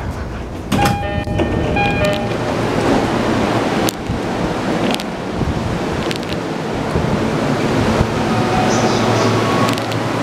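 An E231-series commuter train's doors opening at a station stop, with a short electronic chime of a few tones about a second in. This gives way to a steady wash of platform noise as passengers step off.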